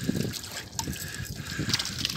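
Shallow water trickling and lightly splashing around a cast net full of freshly caught fish at the water's edge.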